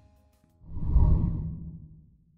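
A single whoosh sound effect for a logo animation: it swells up about half a second in with a deep low end, peaks near the middle and fades away.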